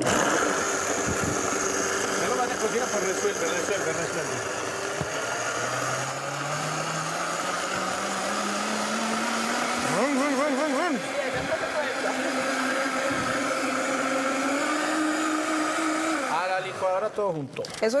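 Countertop blender running, blending a thick pancake batter of oats, banana and almond milk. The motor's pitch climbs steadily through the second half, then it cuts off near the end.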